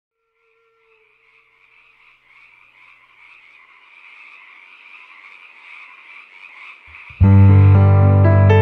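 A faint chorus of croaking frogs fades in and grows slowly. About seven seconds in, the song starts abruptly: loud piano chords on a stage keyboard over a deep bass line.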